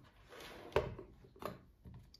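Faint handling noise of small electronics on a wooden table top: a soft rub, then a few light knocks, the clearest two well under a second apart.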